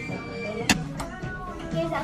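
Background pop music with a sung vocal line and held notes, with one sharp click about a third of the way in.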